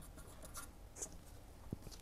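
Faint light scratching with a few small ticks.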